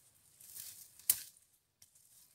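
Soft rustling, then a single sharp click about a second in.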